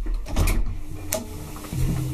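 1962 KONE traction elevator starting a run: two sharp clicks from the car's controls or door gear, then a steady machine hum sets in, with a lower tone joining near the end.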